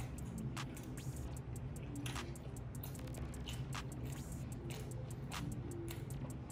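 A person chewing sushi close to the microphone, with irregular wet mouth clicks about once a second, over faint music and a low steady hum.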